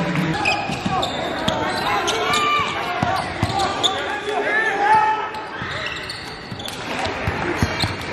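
Live basketball game sound from the court: the ball bouncing on the hardwood several times, short high squeaks that fit sneakers on the floor, and voices of players and spectators calling out.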